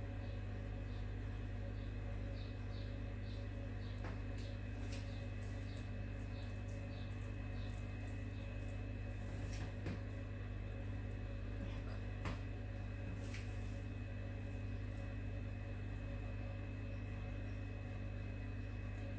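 A steady low hum, with a few faint light taps and ticks scattered through it as pieces of raw meat are set down by hand on thin stretched burek dough.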